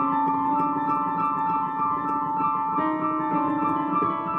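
Digital piano being played: a passage of held notes and chords, the notes changing about every half second to a second.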